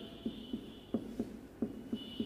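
Marker pen writing on a whiteboard: a quick run of short taps and strokes, about three a second, as the tip is set down and lifted for each letter.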